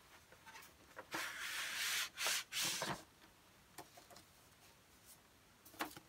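Paper record sleeves being drawn out of a vinyl album's cardboard jacket: soft papery rubbing for about two seconds, then a few light taps.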